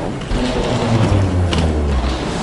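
Steady mechanical rattling and whirring over a low hum that strengthens about a second in.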